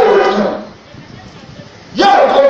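A man's voice through a microphone, loud and amplified: a drawn-out phrase that tails off with falling pitch in the first half-second or so, then a pause of a little over a second before he starts again at the very end.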